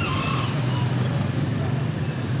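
Motorbike traffic on a city street: a steady low engine hum from scooters running close by.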